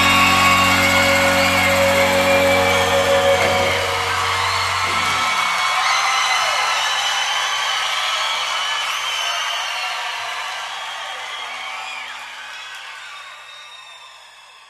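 Background music over a slideshow. The bass drops out about five seconds in, and the remaining music slowly fades away toward the end.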